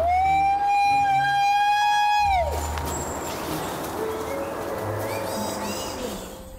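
One long, loud call on a single high pitch, held for about two seconds and then falling away at the end.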